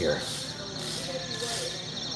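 Background noise of a busy store: faint, distant voices over a steady hiss.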